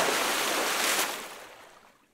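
A hissing, static-like noise sound effect for a title-card transition. It starts abruptly, holds for about a second, then fades away to silence.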